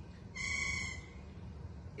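A bird's single steady, high whistled note, about two-thirds of a second long, starting about a third of a second in.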